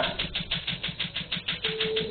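Laser tattoo-removal machine firing: a rapid, even train of sharp snapping clicks, about six a second.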